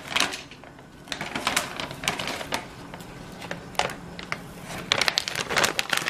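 Plastic bag of stevia crinkling and rustling while a half teaspoon of powder is scooped out, with many small clicks and taps scattered through; the rustling is thickest near the end.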